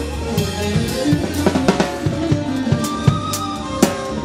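Live band playing an instrumental passage: a drum kit beating out a busy rhythm of snare and bass-drum hits under a sustained keyboard melody.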